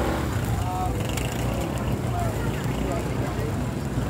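Oysters frying in bubbling oil on a large flat griddle, a steady sizzle over a low, even rumble.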